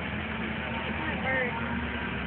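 A snowmobile engine droning steadily as it runs toward the jump, under the chatter of spectators.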